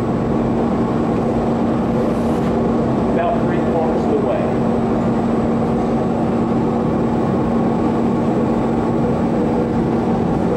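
Steady noise of a glassblowing studio's gas-fired furnace burners and overhead exhaust hood running, with a constant low hum.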